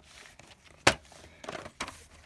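A VHS tape and its case being handled and turned over in the hand: one sharp click a little before a second in, then a few softer clicks and rustles.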